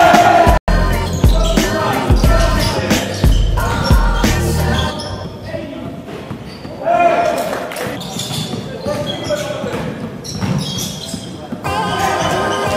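Background music with a voice over it: a steady bass line runs for the first five seconds, then drops out, leaving sharper percussive hits and the voice.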